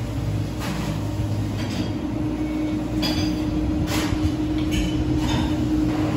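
Café room noise: a steady low drone of machinery with a humming tone, and several light clinks scattered through it.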